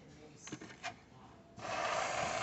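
Aerosol can of whipped cream spraying: a steady hiss that starts suddenly about three-quarters of the way through, after a couple of light clicks.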